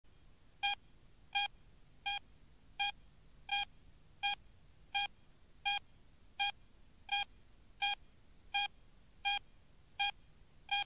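A short electronic beep repeating at an even pace, about once every 0.7 seconds, thirteen times in all, over a faint hiss.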